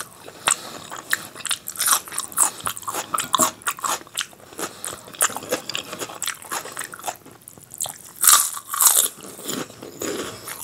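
Close-miked eating by mouth: chewing of rice and dal mixed with sharp crisp crunches of a fried fryum snack, the loudest crunches coming near the end.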